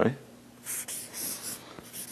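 Felt-tip marker writing on a large paper sheet of an easel pad, a few short scratchy strokes.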